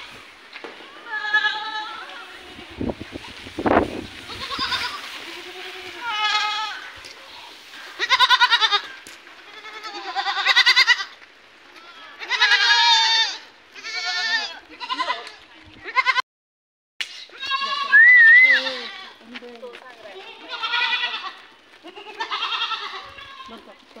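A pen of young goat bucks bleating, one wavering cry after another from different animals throughout. The sound cuts out completely for a moment a little past the middle.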